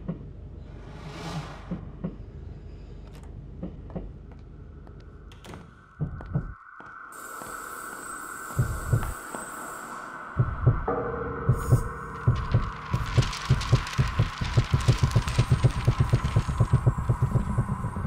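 Tense animated-film sound design: a low rumble, joined about four seconds in by a steady held tone. From about ten seconds a rapid run of deep thumps, several a second, builds and gets louder to the end.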